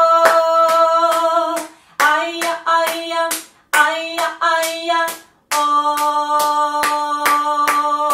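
A woman singing a simple 'aya, ay-oh' melody in long held notes while clapping a steady, even beat with her hands. The sung phrases break off briefly three times while the claps keep time.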